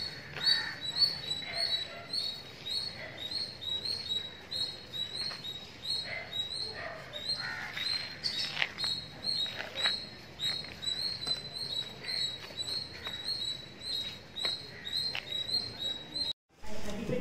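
A bird calling, a steady run of short high chirps a little over two a second, over faint street background noise.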